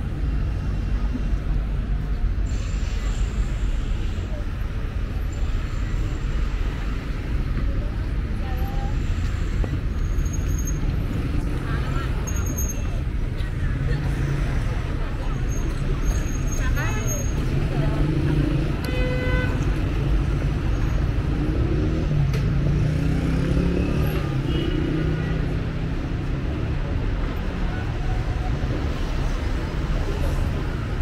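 Street traffic going by, a steady low rumble of cars, with a single car horn toot lasting about a second roughly two-thirds of the way through.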